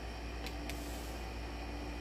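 Steady low hum and hiss of room tone, with a couple of faint soft ticks about half a second in as a tarot card is handled and laid on a cloth-covered table.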